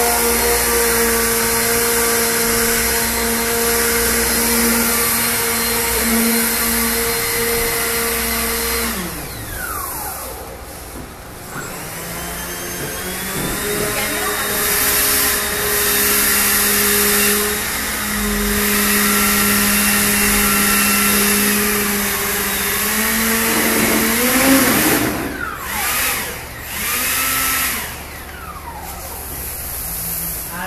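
Small electric ducted fan on a homemade model hovercraft, running with a steady whine. It spins down about nine seconds in, spools up again a few seconds later and runs steadily. Near the end its pitch wavers up and down before it cuts off.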